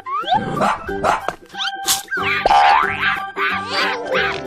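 Children's cartoon background music with cartoon sound effects: quick rising and falling whistle-like glides and animal cries over the tune.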